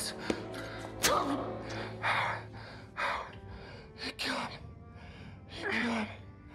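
A man gasping and groaning in pain, short strained breaths about once a second, the last with a voiced moan. A low steady music drone runs underneath.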